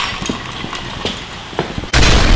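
A few scattered sharp knocks and clatters on a hard floor, then a sudden loud bang with a deep boom right at the end.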